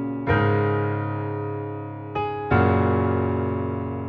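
Piano chords played on a keyboard. One chord strikes just after the start and slowly fades, a short note sounds about two seconds in, and a second chord follows a moment later and dies away near the end.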